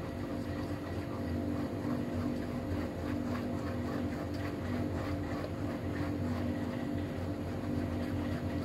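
Wire whisk beating a thick cocoa mixture in a non-stick pot, its wires ticking and scraping against the pan in quick, irregular strokes. Under it runs a steady mechanical hum.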